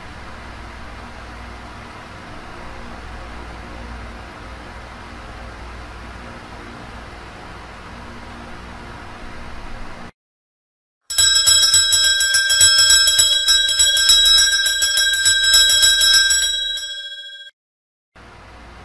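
Altar bells, a cluster of small bells, shaken in a continuous jingling ring for about six seconds before fading out, marking the elevation of the chalice at the consecration. Before the bells come about ten seconds of steady low hiss and a second of silence.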